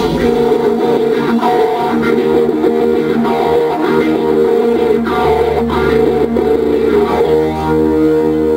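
Live rock band playing an instrumental passage on electric guitars, bass guitar and drums. Near the end, the guitars change to long held chords.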